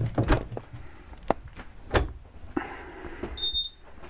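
Wooden cabinet door being opened by hand: several sharp clicks and knocks from its latch and panel.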